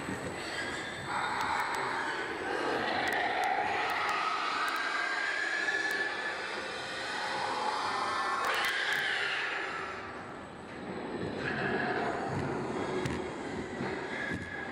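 Several pigs screaming in long, overlapping, wavering calls inside a CO2 stunning lift. The screaming dips briefly about ten seconds in, then returns. It is the pigs' struggling phase of CO2 stunning, an aversive reaction to the gas before they lose consciousness.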